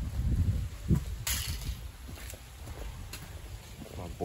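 Footsteps on concrete and rumbling handling noise from a handheld phone as the person carrying it walks, with a short scuff or rustle about a second in.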